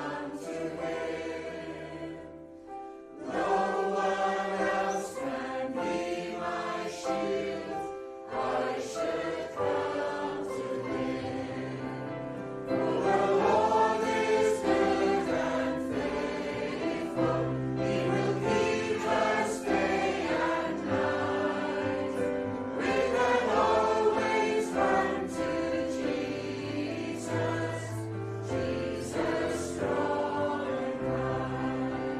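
A congregation of mixed voices singing a worship song together over keyboard accompaniment, with a brief breath between lines about two to three seconds in.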